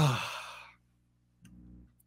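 A man's sigh close to the microphone: one breathy, voiced exhale falling in pitch, lasting under a second.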